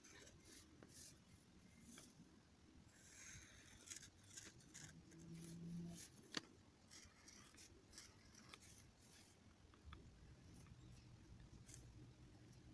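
Faint scratching of a Sharpie permanent marker drawing short strokes on paper, with small ticks and one sharp tick about six seconds in.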